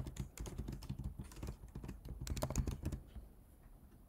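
Typing on a computer keyboard: a quick run of key clicks that thins out near the end.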